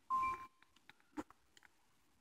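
A short electronic chime from a smartphone at the start: a steady tone with a brief higher note, fading within half a second. About a second later comes a single faint click.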